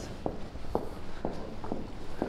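Footsteps of people walking on a hard floor, sharp steps at about two a second.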